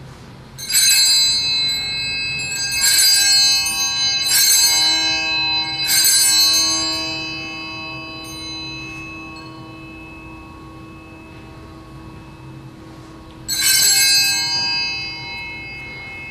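Altar bells (Sanctus bells) rung at the elevation of the host after the consecration: several bright ringing strikes in the first six seconds, a long ringing fade, then one more ring near the end.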